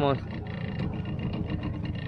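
Small outboard motor running steadily, a low even hum as the wooden boat moves along the river.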